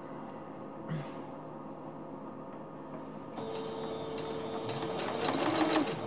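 Singer computerized sewing machine stitching a short run, starting a little after halfway and getting louder toward the end.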